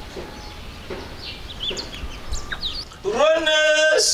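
Small birds chirping now and then over a faint outdoor hum. About three seconds in, a voice starts singing loudly, holding a long note.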